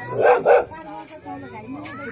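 A dog barking twice in quick succession, two short loud barks a quarter second apart, over faint background voices.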